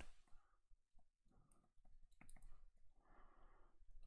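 Near silence, with faint clicks and soft scratching of a stylus writing on a tablet, and a few quiet breaths.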